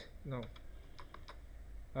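A few separate, faint computer keyboard keystrokes, ending with the Enter press that runs the pasted code in the console.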